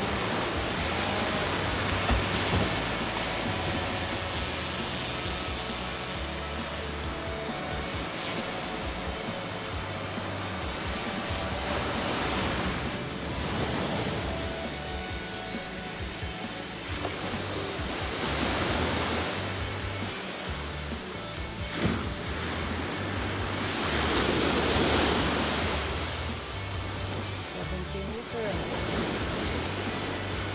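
Surf washing onto a beach, its noise swelling every few seconds as waves break, under background music with a steady bass line.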